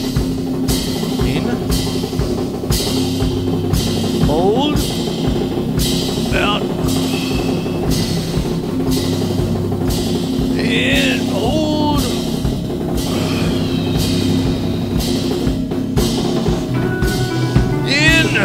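Drum kit played in a steady groove, a cymbal-bright stroke landing about every two-thirds of a second, over a sustained low tone.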